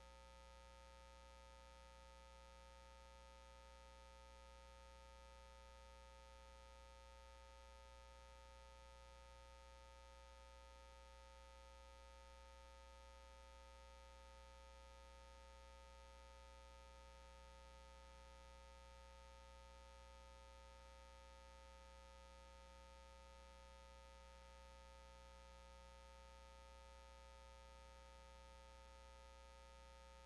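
Near silence: a faint, steady electrical hum with a few thin, unchanging tones above it.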